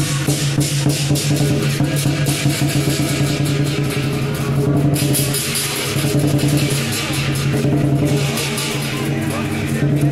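Lion dance music: rapid, evenly paced cymbal clashes over drum beats and sustained low ringing tones, played continuously.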